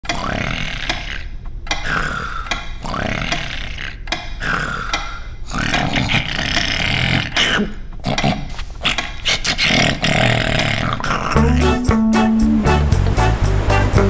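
Exaggerated cartoon snoring from a sleeping character: about four long rasping snores, one every second and a half or so. Background music with a steady low line comes up near the end.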